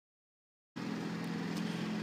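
Silent at first, then a steady low machine hum starts up a little under a second in and holds even.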